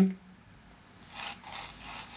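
Graphite pencil sketching on paper: a series of short scratchy strokes, starting about a second in.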